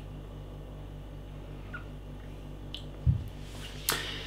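A man tastes beer from a glass: a low gulp about three seconds in, then a sharp lip smack just before the end, over a steady low hum.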